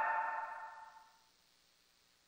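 Echoing tail of stacked two-part harmony backing vocals, a few held pitches fading out over about a second after the singing cuts off, then silence.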